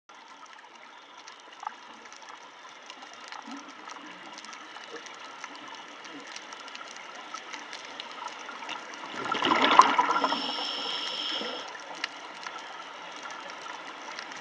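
Underwater audio: a faint crackle of scattered clicks, then about nine seconds in a scuba diver's exhaled breath bursts from the regulator as a loud gurgle of bubbles lasting about two and a half seconds.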